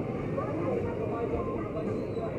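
Busy street ambience: indistinct voices of passers-by over steady traffic noise.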